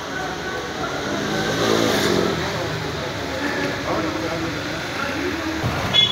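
Indistinct voices with road traffic going by; a vehicle engine revs up about a second and a half in.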